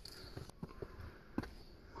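Faint footsteps of people climbing stone steps: a few soft, irregular steps, the firmest about halfway through.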